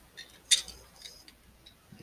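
Plastic clicks from a small transforming robot toy figure being handled and its snap-on boot pieces pressed into place: one sharp click about half a second in, then a few fainter ticks.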